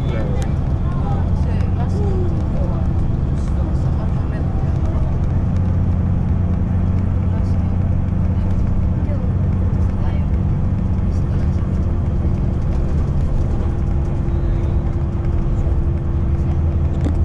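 Steady low engine and road drone of a moving bus, heard from inside the cabin, with a faint steady whine joining about halfway through.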